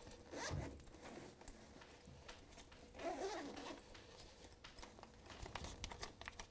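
Faint chalk on a blackboard: a run of short scratching strokes and light taps as a student writes out math.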